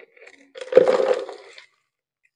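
Loose potting medium poured from a tipped black plastic pot into another plastic pot: a few small knocks, then a single rushing pour lasting about a second.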